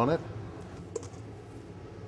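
Mostly quiet room tone, with one faint short click about halfway through.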